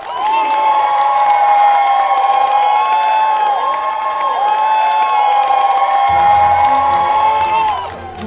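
A crowd of many voices cheering and shouting together, a victory cheer added as a sound effect. It starts suddenly and stops near the end, as music comes in underneath from about six seconds in.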